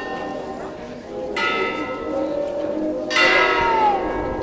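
A large bell tolling slowly for a funeral, struck about a second and a half in and again about three seconds in, each stroke ringing on. Beneath it runs a low murmur of the crowd.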